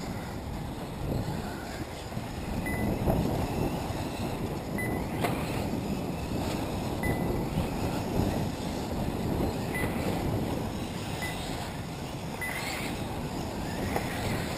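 Wind buffeting the microphone in a steady low rumble. Short, high single beeps come at irregular intervals, a few seconds apart.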